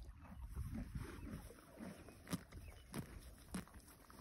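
A yearling colt grazing close up: quiet tearing and chewing of grass, with a few short, crisp tears, the loudest a little past two seconds in.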